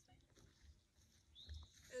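Near silence: faint outdoor room tone, with a brief, faint high-pitched call near the end.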